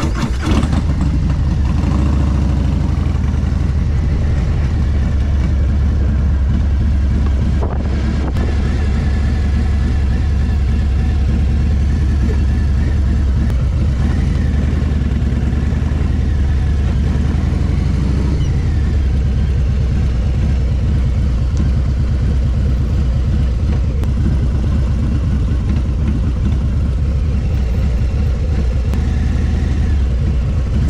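A 2022 Harley-Davidson Low Rider ST's Milwaukee-Eight V-twin running under way at low speed, a loud, steady low engine note that dips briefly about eight seconds in.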